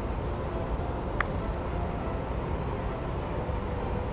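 A putter striking a golf ball once, a single short click with a brief ring about a second in, over a steady low rumble.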